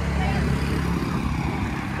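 Low, steady rumble of road traffic on a highway.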